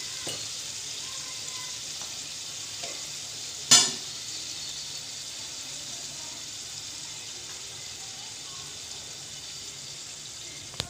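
Chicken pieces with spice powder sizzling steadily in a frying pan. A single sharp knock comes a little under four seconds in.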